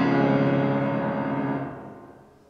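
Grand piano's closing chord ringing on and slowly dying away, fading out near the end: the last sound of a song accompaniment.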